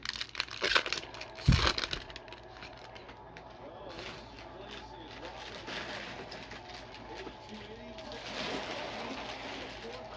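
Wrapper of a 2021 Bowman baseball card pack crinkling as it is torn open and the cards pulled out, with a loud crackle about a second and a half in; after that, quieter handling of the cards.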